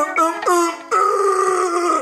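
A high, nasal voice singing loudly into a toy microphone: a few short notes, then one long held note through the second half.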